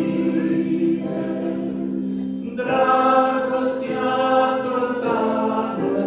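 A woman and a man singing a hymn together in harmony, holding long notes; the singing grows fuller and louder about two and a half seconds in.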